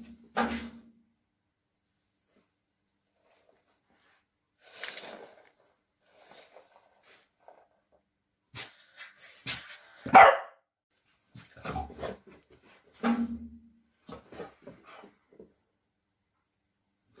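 A spaniel giving a series of short, separate barks, the loudest about ten seconds in, in answer to silent hand cues.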